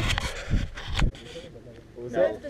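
Low rumbling and rustling noise on a hat-mounted GoPro's microphone, with two sharp knocks, dropping to a quieter hiss about a second in.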